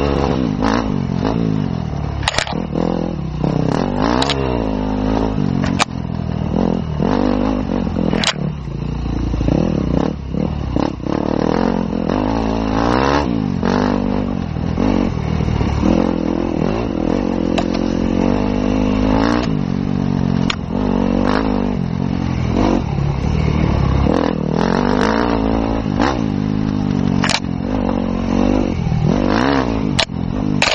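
Enduro motorcycle engine on an off-road trail, its revs rising and falling again and again as the throttle is opened and closed, heard from the rider's own bike. Many short sharp clicks and knocks come through over the engine.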